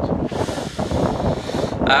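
Wind buffeting a phone's microphone: a steady low rumble with a hiss through the middle. A man's voice starts near the end.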